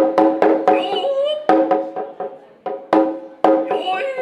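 Shime-daiko (Noh taiko) struck with thick sticks in Noh style: a series of sharp strikes in irregular groups, each ringing with a clear pitched tone. The drummer's shouted calls (kakegoe) come between the strokes, one near the end.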